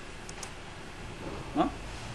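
Low steady hiss with two faint, sharp clicks about half a second in, then a short spoken "no" near the end.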